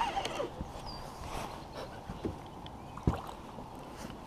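Quiet outdoor sound of a small fishing boat on calm water: faint water movement against the hull, with a couple of light knocks, one about two seconds in and a sharper one about three seconds in.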